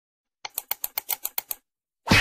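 A clicking sound effect: nine quick, sharp clicks, about seven or eight a second, like keys being typed. They start about half a second in and stop short after a little over a second.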